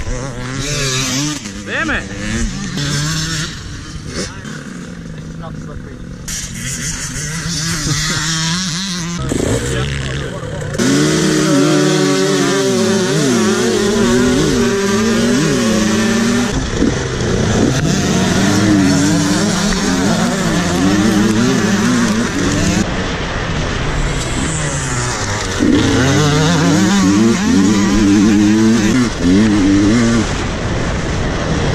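Dirt bike engine heard from on board, revving up and down through the gears as the bike is ridden hard. It is quieter for the first several seconds, then louder and working hard from about a third of the way in.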